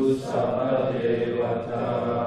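A group of voices chanting a Pali blessing verse together in unison, repeating the leader's line.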